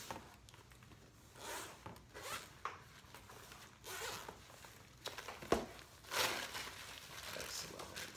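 Zipper of a black padded soft carrying case being unzipped in several short rasps, with a sharp click about five and a half seconds in as the case is handled.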